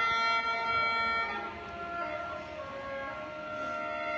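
Lao khene, the bamboo free-reed mouth organ, playing several held notes at once as reedy chords. The chord changes a little over a second in, where it gets somewhat softer, and shifts again midway.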